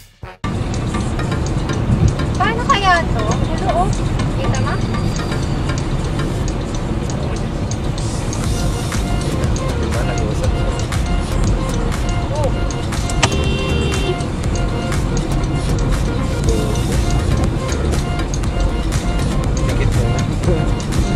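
Steady road and engine rumble inside a car driving on a highway, with music and a little talk over it.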